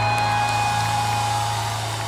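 The last chord of a live rock song ringing out through guitar amplifiers, a few sustained tones over a steady low hum, slowly fading.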